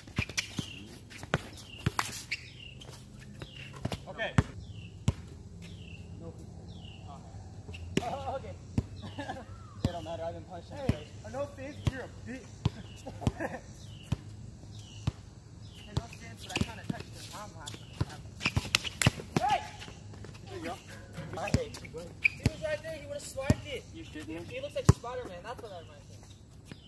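A basketball bouncing on a court during play, heard as irregular sharp thumps, some in quick runs of dribbling, with the loudest around 2, 4, 8 and 19 seconds in.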